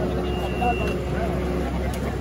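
Magirus aerial-ladder fire truck's diesel engine running steadily at idle, under people talking. A short high beep sounds about a quarter of a second in.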